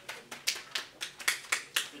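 A small group of people clapping, with claps coming about four a second.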